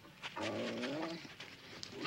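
Wolf whining: a wavering, pitched whine lasting about two-thirds of a second, then a few short clicks near the end.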